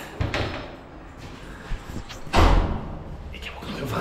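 A front door being pushed open and swinging shut, with one heavy thud about two and a half seconds in.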